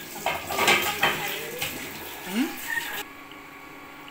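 Coconut milk being poured into a rice cooker's inner pot over ketupat, with the vessel and ketupat knocking and clattering against the pot through the first second and a half, then quieter handling.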